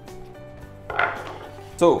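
Wooden box lid set down on a wooden tabletop: one short knock with a brief scrape, about a second in.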